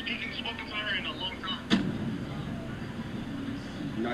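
Speech in the first second or so over a steady low background rumble, broken by one sharp click about two seconds in; the rest is mostly the rumbling background.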